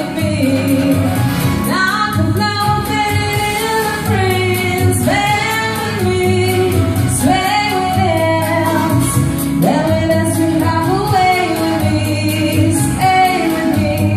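A woman singing into a handheld microphone in sung phrases with long held notes that glide between pitches, over backing music with a steady beat and bass.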